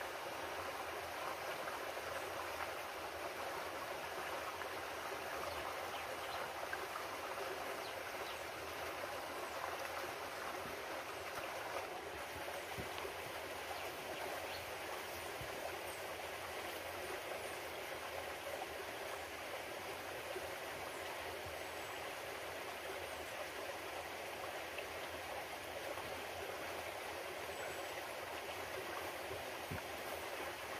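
Steady rushing and trickling of a shallow stream flowing over rocks.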